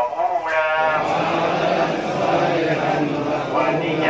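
A large crowd of pilgrims chanting together in unison, after a single man's voice about half a second in.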